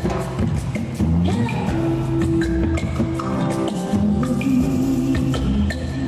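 Tejano band playing live as a song begins: keyboard, electric bass and drums, with steady percussion and held keyboard notes, no vocals yet.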